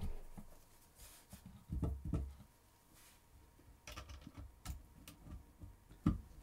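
Faint handling sounds as a USB-C cable is plugged into a tiny camera board on a plastic breadboard: a soft bump, then a few small clicks and taps from the plug and fingers.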